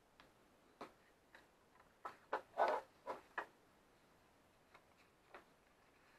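Scrapbook card stock being handled and creased on a tabletop: light taps and short paper clicks, with a cluster of them and a brief scrape between about two and three and a half seconds in.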